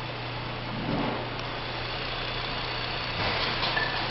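Ford 3.5-litre V6 idling steadily, with a louder rush of noise about a second in and again near the end.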